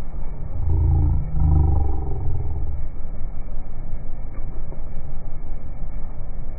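A car's exhaust rumbling, louder for about two seconds near the start and then settling to a steady low rumble.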